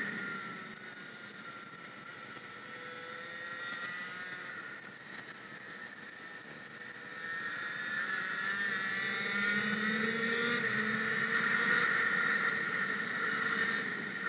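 Racing kart engine heard from the driver's helmet: the revs drop at the start as the kart slows for a corner, stay low for several seconds, then climb again about halfway through as it accelerates hard.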